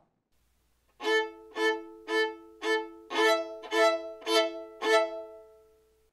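Violin playing a short excerpt of rolled chords in double stops on its upper strings, sounding the perfect fourth E to A and the perfect fifth A up to E. It is eight bowed strokes about half a second apart, starting about a second in, and the last chord rings out near the end.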